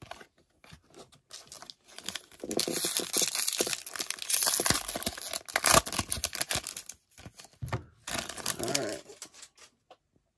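Foil wrapper of a Topps baseball card pack being torn open and crinkled in the hands. The tearing starts a couple of seconds in and is sharpest a little past halfway, with a final burst of crinkling near the end.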